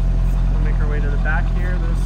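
A 2000 Corvette C5's 5.7-litre LS1 V8 idling steadily, with a low, even exhaust note.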